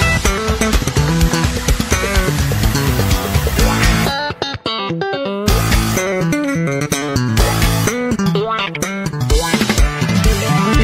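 Background music that runs busy and steady, with a short break of about a second a little after four seconds in, where the bass and beat drop out before coming back.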